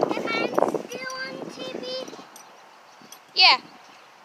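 Children's high-pitched voices calling out, half-heard, over a rough rustle in the first second. About three and a half seconds in comes one short, loud, high-pitched child's yell that sweeps up and back down.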